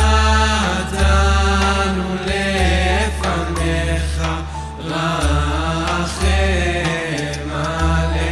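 A woman singing a Hebrew worship melody in long held, bending notes, backed by a live band with a steady bass line.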